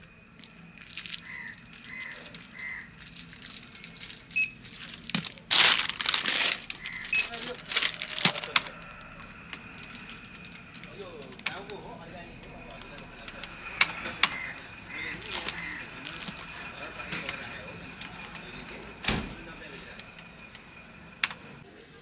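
Plastic snack packets and paper banknotes being handled at a shop counter: scattered crinkles and clicks, with a loud rustle about six seconds in.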